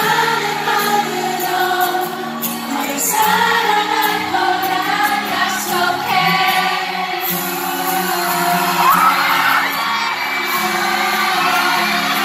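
A male singer's voice sung live into a microphone over a pop song's backing music, amplified through an arena sound system.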